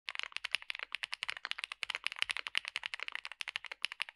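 Fast, continuous typing on a Mr. Suit (Suit80) mechanical keyboard: a rapid, even stream of keystrokes, about ten a second.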